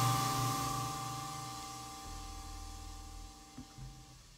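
A jazz quartet's final chord ringing out and fading away after the closing hit: cymbal wash and held notes dying down steadily. A couple of faint clicks come near the end.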